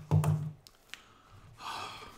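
A man's short low murmur, a few faint clicks as he handles the headphones he is wearing, then an audible breath just before he speaks again.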